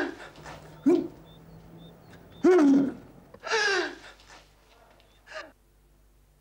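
A woman sobbing: about five separate falling cries with gasping breaths between them, the loudest about two and a half seconds in. The crying fades out shortly before the end.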